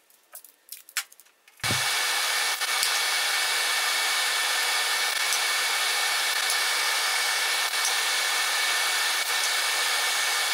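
A blower fan starts suddenly just under two seconds in and then runs on as a steady rushing with a faint whine, with a few faint clicks over it.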